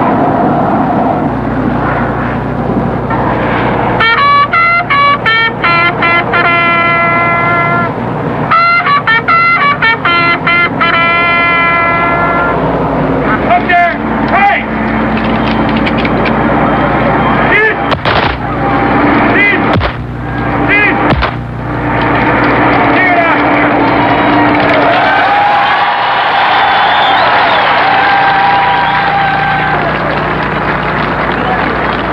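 A ragged volley of gunshots, five or so sharp cracks over about three seconds a little past halfway, fired as a graveside salute over continuous crowd noise. Earlier, two runs of short, rapidly repeated high pitched notes sound over the crowd.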